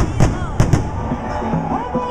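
Carnival samba music and voices with loud sharp cracks, a few of them about half a second apart in the first second.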